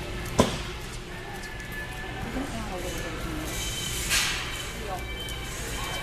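Store ambience of background music and indistinct voices, with a sharp knock about half a second in and a brief hiss about four seconds in.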